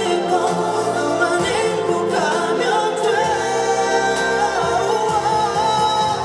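A male vocalist singing a pop ballad live into a handheld microphone over band accompaniment, heard through the concert sound system. He holds one long note in the middle.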